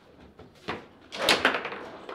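Table football being played: a few light knocks of the ball against the plastic figures, then a loud, sharp clack a little over a second in as the ball is struck hard in a shot.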